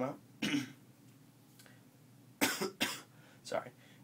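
A man coughing: a short cough about half a second in, then two loud coughs in quick succession a little past halfway.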